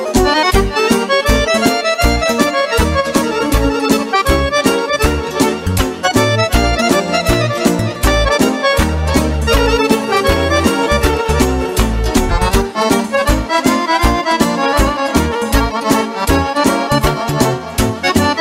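Instrumental break of Romani (lăutărească/manele) music: accordion playing fast melodic runs over a steady, quick beat and bass.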